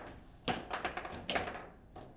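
Table football being played: the ball struck by the plastic players and knocking against the rods and table, a quick run of sharp knocks with the loudest about half a second in and again just past the middle.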